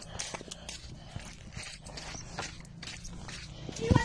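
Irregular clicks and taps of a handheld phone being moved about, over a low rumble, with a louder thump just before the end.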